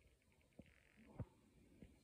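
Near silence broken by three faint thumps about two-thirds of a second apart, the loudest just past the middle: handling noise from a handheld microphone.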